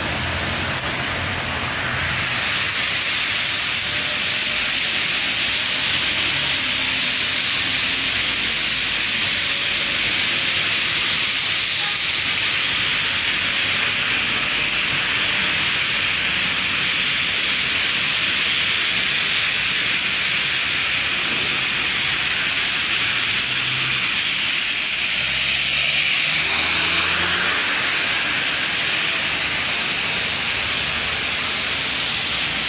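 A steady, loud hiss, mostly high-pitched, of wind and wet snowfall on the phone's microphone outdoors, with a faint low rumble of traffic about 23 to 28 seconds in.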